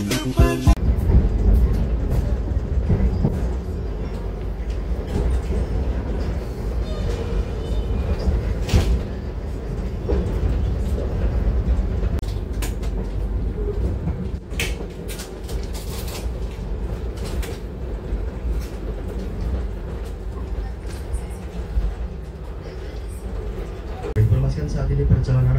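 Interior noise of a Tawang Jaya Premium passenger coach, a steady low rumble with scattered clicks and knocks, as of the train running. Background music fades out in the first second.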